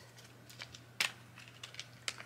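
Small gift packaging handled by hand: faint rustles and light clicks, with one sharper click about halfway through.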